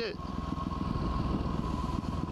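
2010 Yamaha WR250R dual-sport motorcycle under way, its single-cylinder engine running steadily under wind rush on the helmet-mounted camera, with a faint steady whine.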